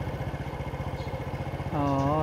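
Motorcycle engine running steadily, a rapid, even low pulsing.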